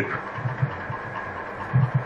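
Steady room noise, a low hum with hiss, heard through a lecture microphone during a pause in a man's speech, with a faint low sound near the end.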